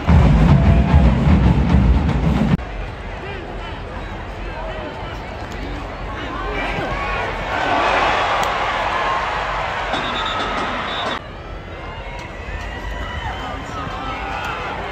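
Stadium crowd at a football game: many voices shouting and cheering at once, swelling to a louder burst a little past halfway and then dropping off suddenly. A loud low rumble fills the first two and a half seconds.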